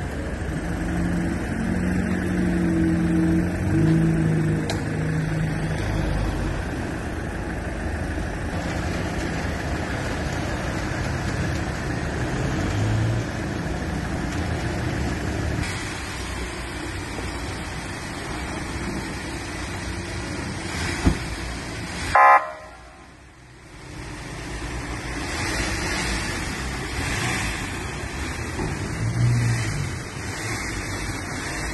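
Street traffic noise with vehicle engines running, and one short car horn toot about two-thirds of the way in.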